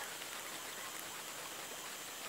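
Faint, steady outdoor background hiss with no distinct sound in it.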